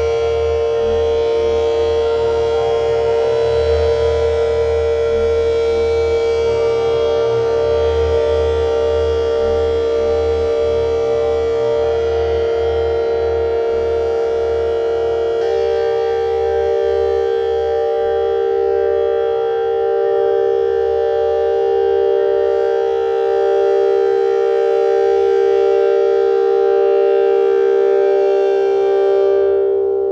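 Eurorack modular synthesizer playing an ambient drone: held, layered tones over a pulsing low end. The chord shifts a few times, most clearly about halfway through, and the bright upper layer drops away near the end.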